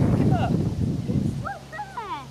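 A loud rough rushing noise fills the first part. From about one and a half seconds in, a dog whimpers and whines in short high notes that swoop up and down.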